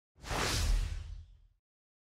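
A whoosh sound effect with a deep bass underneath. It comes in suddenly near the start and fades away over about a second.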